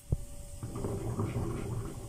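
Chopped garlic and dried coriander frying in hot oil in a pan: a bubbling sizzle that thickens about half a second in, after a single knock at the start.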